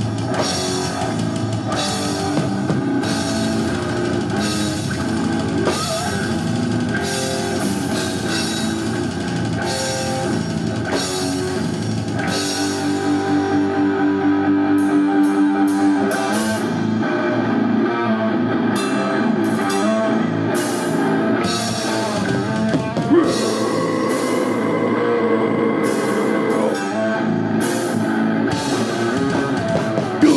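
Brutal death metal band playing live: distorted electric guitars, bass and a drum kit with constant cymbal and drum hits, loud and dense throughout.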